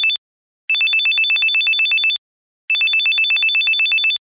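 Mobile phone ringing with an electronic trill ring: a rapid warble between two high tones, in rings of about a second and a half separated by short silences. The tail of one ring is heard, then two full rings.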